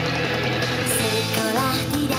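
Upbeat idol-pop song playing with full band backing, with singing voices gliding in from about a second and a half in.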